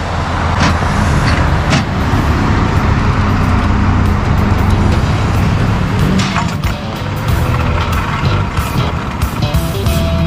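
Idling tow truck engine, a steady low rumble, with background music coming in over it during the later seconds.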